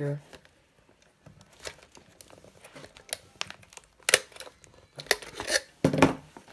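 Needle-nose pliers clicking and scraping against a metal binder ring mechanism while its cap is prised off, with a run of sharp metallic clicks in the last two seconds.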